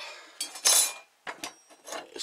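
Small cut steel plates being handled on a steel workbench: light metallic clinks, with one louder clattering scrape a little over half a second in and a few more clicks after.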